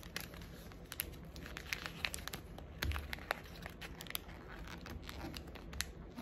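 A sheet of paper rustling and crinkling as it is folded and creased by hand, with many small irregular crackles and a soft thump about three seconds in.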